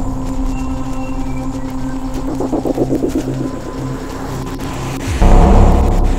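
Dark ambient score: a steady low drone with a pulsing swell about two and a half seconds in, then a sudden loud low surge a little after five seconds.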